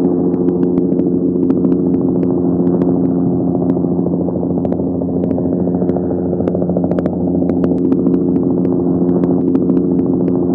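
Light helicopter's engine and rotor running steadily at close range: an even, loud hum with faint clicks scattered through it.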